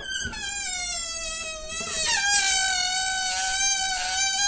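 Air squealing out of an inflated rubber balloon through its neck, pinched and stretched between the fingers so that the rubber vibrates. One long, high-pitched squeal that sags slightly in pitch, then steps up about halfway through and holds steady.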